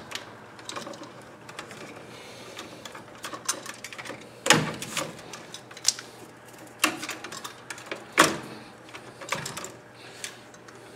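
Plastic-sheathed electrical cable being stripped of its outer jacket with a hand tool: scattered clicks, snaps and rustles of the tool and plastic sheathing, with about four sharper snaps in the second half.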